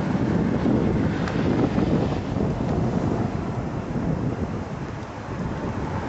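Wind buffeting the camera's microphone: an uneven low rumble, heaviest in the first half and easing near the end.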